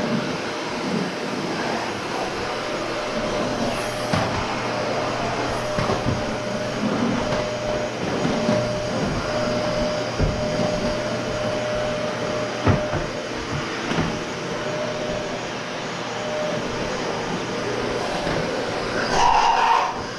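Vacuum cleaner running steadily, air rushing through its long hose, with a faint steady whine through the middle and a few light knocks.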